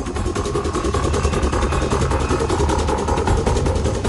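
Car engine idling steadily, with an even low rumble.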